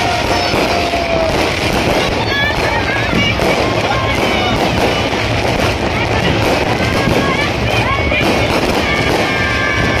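Aerial fireworks bursting and crackling overhead in a dense, continuous crackle, mixed with music and people's voices.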